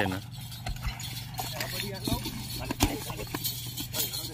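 Yoked pair of bulls dragging a heavy wooden log over dry dirt, with a few scattered knocks and thumps from hooves and the log. Men's voices call faintly over it.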